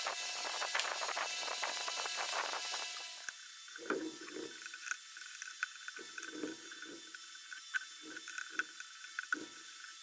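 Small-screwdriver and wire-handling noise: for about three seconds, clicks over a steady hiss. The hiss then stops abruptly, and about seven short, irregular scrapes with light ticks follow as the screwdriver works.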